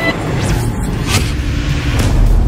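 Cinematic whoosh sound effects over a deep low rumble, with two quick sweeps about half a second and a second in.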